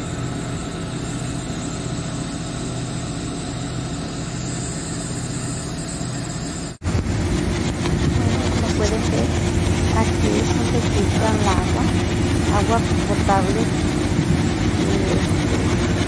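An engine idling steadily, cut off abruptly about seven seconds in and followed by a louder, steady low machinery rumble with faint voices over it.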